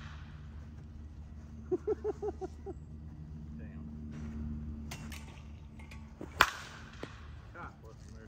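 One-piece composite Short Porch Drip Johnny Dykes senior slowpitch softball bat hitting a softball: a single sharp crack about six seconds in, the loudest sound. Before it a man laughs briefly.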